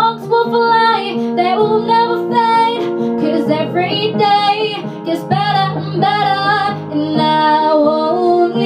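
A girl singing a slow pop ballad into a handheld microphone over an instrumental backing track of held chords, her voice coming in short phrases of bending notes.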